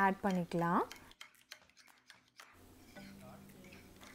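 Metal spoon stirring sour cream dressing in a ceramic bowl, a run of faint clicks and scrapes against the bowl.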